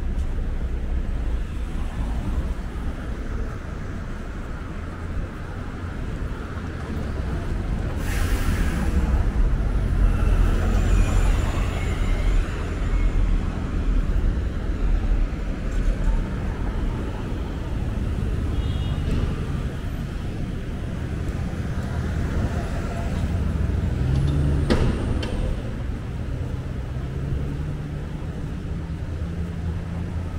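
City street traffic at a busy intersection: a steady low rumble of vehicle engines and tyres, with a loud hiss about eight seconds in and a short sharp sound near the end.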